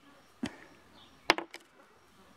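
Two sharp clicks less than a second apart as a Barnes copper bullet is picked out of its box and set down on the table, the second click ringing briefly.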